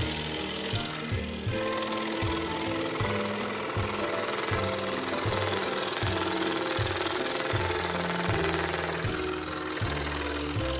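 Scroll saw running with its blade cutting through plywood, a fast, steady reciprocating sound, under background music with a steady beat and bass line.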